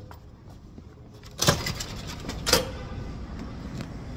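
Two loud, short bursts of noise on a handheld phone's microphone, about a second apart, as it is carried out of a building. A low rumble of outdoor traffic comes up with the first burst and keeps on under the second.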